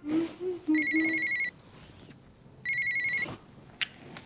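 Mobile phone ringing with an electronic trilling ringtone, two rings of under a second each, with a short click near the end.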